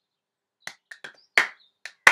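Five sharp hand claps in an uneven rhythm, starting about half a second in; the fourth is the loudest.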